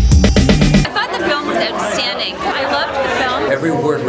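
Music with a heavy beat that cuts off about a second in, giving way to the chatter of a crowd, many people talking at once.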